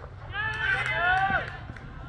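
Cricket players shouting on the field, several loud drawn-out calls overlapping for about a second, starting just after the batter's shot.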